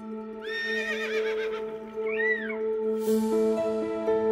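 A horse whinnying: a long quavering whinny, then a shorter rising-and-falling one about two seconds in, over soft ambient music with sustained tones. A bright plucked note comes in near the end.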